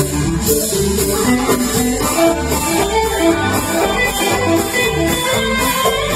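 Live band playing an instrumental passage: strummed acoustic guitar and electric guitar over upright bass, with drums keeping a steady beat on the cymbals.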